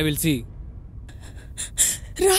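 A person's voice in distress: a short pitched vocal sound at the start, then a quick run of breathy gasps from about halfway through.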